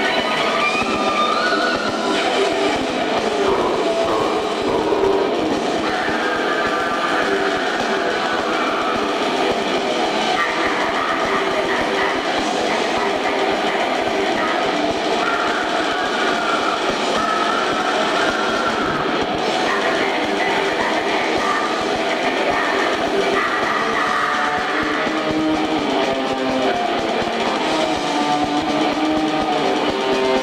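Live metal concert audio recorded on a camcorder during a break between songs: a loud, steady wash of crowd shouting and cheering over the hum and drone of the band's amplified gear.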